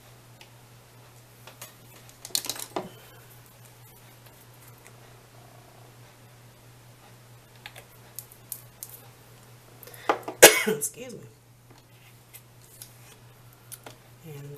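Scattered small clicks and taps of nail polish bottles and nail-art tools being handled on a tabletop, over a steady low hum. About ten seconds in there is a short, louder burst like a cough.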